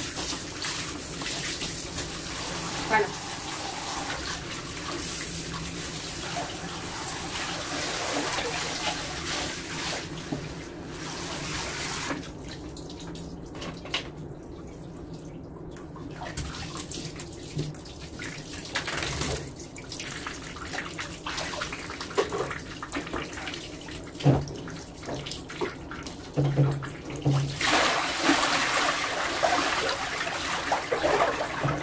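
Water running through a handheld shower head onto a small dog standing in a plastic basin, with steady spray for about the first ten seconds. Then quieter splashing and sloshing while the dog is washed by hand. Near the end comes a loud rush of water as the basin is tipped and emptied.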